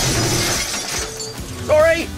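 Glass smashing, a crash followed by a tinkling spray of shards that fades over about a second and a half. A voice cries out near the end.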